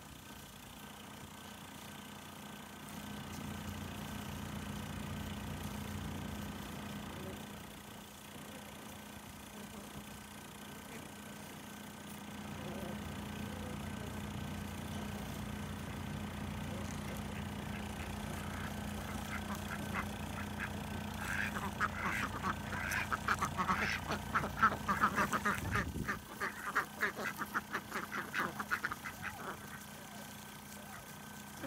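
Domestic ducks quacking in a quick run of short, repeated calls that starts about two-thirds of the way in and is loudest shortly before the end, over a steady low hum.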